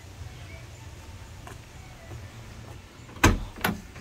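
A 1967 Plymouth Belvedere GTX hardtop's door being unlatched and opened: two sharp clacks about half a second apart near the end, the first the louder, over a low steady rumble.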